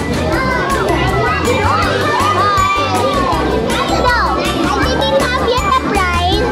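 A roomful of children shouting and chattering over each other, with background music with a steady beat underneath.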